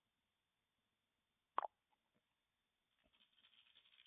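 Near silence, broken by one short sharp click about one and a half seconds in. A faint patter of computer keyboard typing starts near the end.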